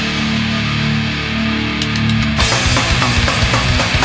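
Baltimore hardcore punk band recording with distorted electric guitar and drum kit. A low chord is held ringing, a few quick ticks lead in, and about two and a half seconds in the drums and guitars crash back in together at full drive.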